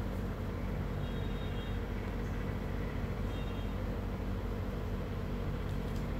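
Steady low hum of room background noise, even throughout, with two faint brief high tones, one about a second in and one about three seconds in.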